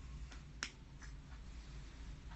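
One sharp click a little past half a second in, with a few fainter clicks around it, over a steady low rumble.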